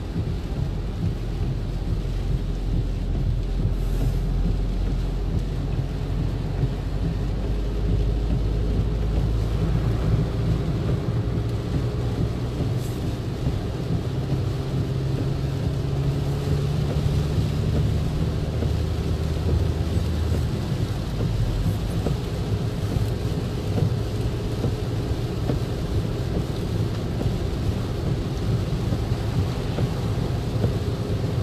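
Car interior noise while driving on a rain-soaked road in a downpour: a steady low rumble of engine and tyres, with the hiss of tyre spray and rain on the car.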